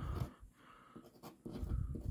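Steel nib of a dip pen scratching across paper in several short strokes as words are handwritten, with some low thumps.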